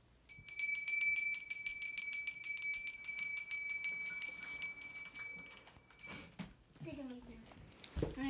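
A small bell rung rapidly and continuously, about six or seven strikes a second, for some six seconds. It fades over its last couple of seconds and then stops.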